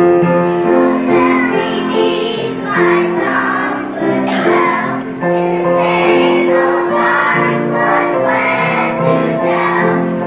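A choir of young children singing together in unison, with long held notes.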